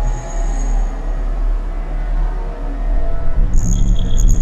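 Glitch/illbient noise music generated by a Pure Data patch: randomly chosen samples run through reverb and delay over a steady deep bass drone. A high ringing tone sounds near the start, and about three and a half seconds in the low end grows louder and denser under new high ringing tones.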